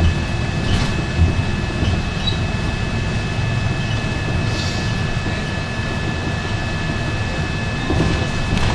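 Inside a moving city bus: the steady low rumble of the engine and tyres on the road, with two faint, thin, steady high tones running throughout and a few light rattles.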